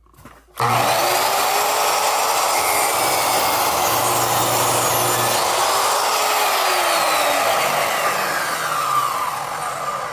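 Chop saw with a non-ferrous blade starting suddenly about half a second in and running loudly while cutting aluminum tile trim sandwiched between scrap wood. Near the end the motor winds down with a falling pitch.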